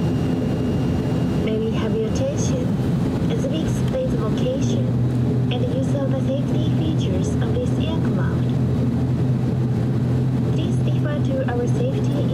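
ATR 42-600 turboprop engine (Pratt & Whitney Canada PW127 series) running at ground idle with its propeller turning slowly, heard inside the cabin as a steady low hum that grows stronger about four and a half seconds in. A voice talks over it throughout.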